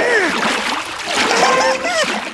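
Cartoon sound effect of a fire hose spraying water in a steady hiss, with squeaky, wordless character vocalising over it.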